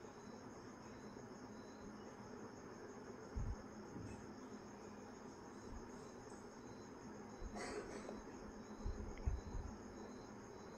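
Quiet kitchen: a faint high chirping repeats steadily in the background, and a steel spoon and mesh strainer over a wok of drained frying oil give a few soft knocks and scrapes, most about a third of the way in and near the end.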